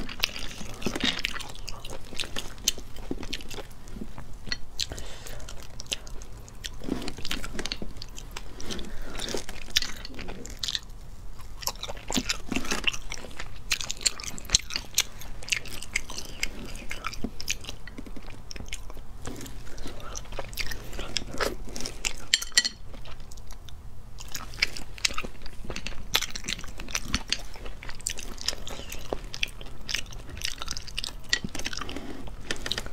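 Close-up eating sounds from sea snails in sauce: chewing and an irregular run of many small, sharp clicks as the shelled snails are handled and eaten.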